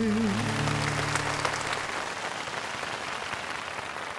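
A song's final held note and its band backing die away in the first second or two, and an audience applauds, the clapping slowly fading.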